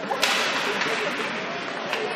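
Ice hockey skate blades scraping the ice in a sharp, hissing scrape about a quarter second in, over the general hubbub of players and voices in an arena.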